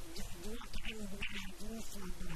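A man's voice speaking into a handheld microphone.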